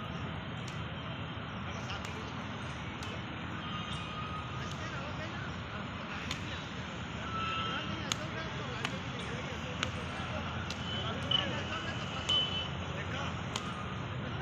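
Badminton rackets striking a shuttlecock in an outdoor rally: short sharp clicks every second or two, over a steady low background rumble.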